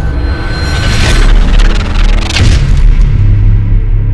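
Cinematic logo-reveal sound effect: deep booms and two whooshing sweeps over music, settling into a low, held tone near the end as the high end fades away.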